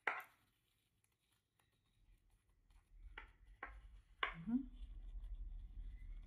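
Quiet handling of a ribbon bow and its sewing thread by hand: a sharp rustle at the start, then three short rustles between about three and four seconds in, over a low hum.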